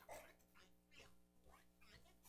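Near silence: room tone with a steady low hum and a few faint short sounds.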